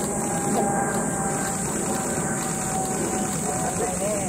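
Steady low background rumble with faint voices in it.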